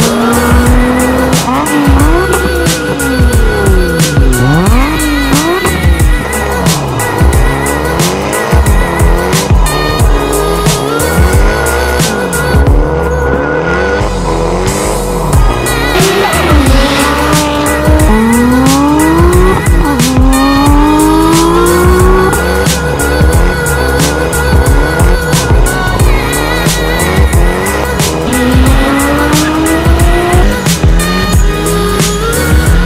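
Nissan Skyline R34 GT-R's RB26 straight-six revving hard through full-throttle pulls, its pitch climbing and dropping back at each gear change, mixed under music with a steady beat.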